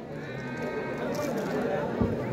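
Murmur from a large outdoor crowd, with a drawn-out high-pitched call rising out of it in the first second.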